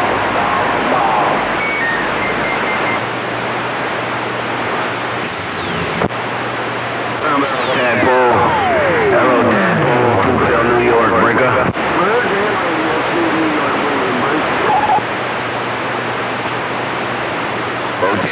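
CB radio receiving distant skip stations: a steady hiss of static with faint, garbled voices breaking through it. About seven seconds in, a whistle slides down from high to low pitch over a few seconds.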